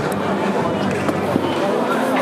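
Overlapping voices in a large indoor hall: a steady babble of people talking and calling out, no one voice standing clear.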